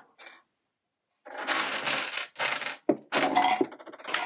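Pieces of a home-built chain-reaction contraption clattering and rattling as they fall: after about a second of quiet, four clattering bursts over the next two and a half seconds, one with a thin metallic ring.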